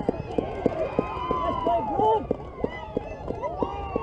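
Several high-pitched voices cheering and yelling over one another, with a shouted "Yes!" at the start.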